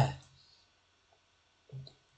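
A man's voice trailing off on a word, then a pause of about a second with only a faint click, and a short voiced sound near the end as he draws up to speak again.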